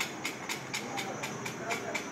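Rapid, evenly spaced mechanical clicking, about eight clicks a second, over a faint hiss.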